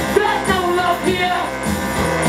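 Live experimental dark rap/noise music with a steady pulsing beat about twice a second, and a voice sliding in pitch through the stage microphone over dense layered electronics.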